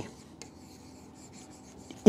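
Chalk writing on a blackboard: faint scratching strokes as a word is written, with a light tap about half a second in.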